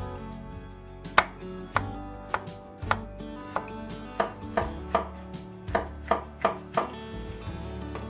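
Chinese cleaver chopping a green chili pepper on a wooden cutting board: about a dozen sharp knocks, starting about a second in, coming faster in the second half at roughly three a second, and stopping near the end.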